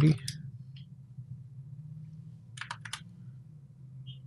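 Computer keyboard typing: a quick run of four or five key clicks about two and a half seconds in, entering a value, over a faint steady low hum.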